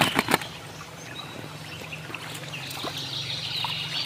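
Shallow creek water trickling over stones, a steady watery hiss. A few sharp clicks at the very start, as a plastic action figure knocks into a plastic basket.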